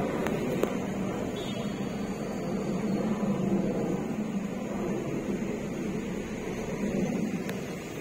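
Steady hum and road noise inside a car's cabin while it creeps along in city traffic, with a couple of faint clicks in the first second.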